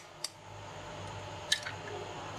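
An egg cracked with a knife over a bowl: a sharp tap of the blade on the shell, then about a second later a click and small wet sounds as the shell is pulled open and the egg drops into the bowl.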